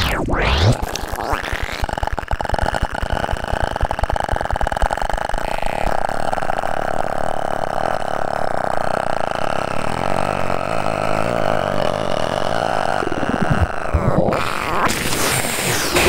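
Live experimental electronic music: a rapidly pulsing, buzzy drone under steady held tones, the pulsing thinning out after about six seconds. The drone cuts off sharply near the end and gives way to swooping pitch sweeps.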